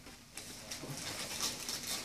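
Paper and a gift box rustling and crinkling in a run of short crackles as a toddler digs through a present of clothes.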